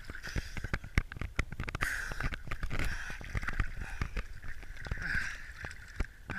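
Cold lake water sloshing and splashing close to the microphone as a person moves about chest-deep in it, with many irregular sharp clicks and knocks throughout.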